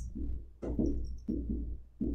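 Dry-erase marker writing on a whiteboard: three short scratchy strokes, with a faint high squeak of the tip about a second in.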